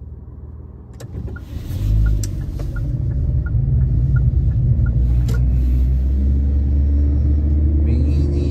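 Car driving, heard from inside the cabin: a low engine and road rumble swells about two seconds in and then runs steady. A light regular ticking, about three a second, runs through the first half, typical of a turn-signal indicator.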